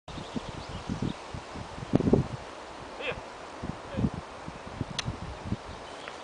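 Outdoor rustling with irregular low thumps, the strongest about two seconds in, and a single sharp click about five seconds in.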